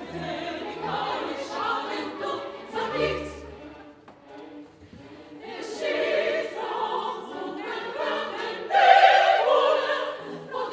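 Women's opera chorus singing with orchestra. The music drops to a brief lull about four seconds in, then the voices swell to their loudest near the end.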